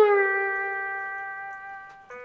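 Epiphone Casino electric guitar played with a slide on the B string, the note gliding down from the 12th fret to the 8th and then ringing out, fading steadily.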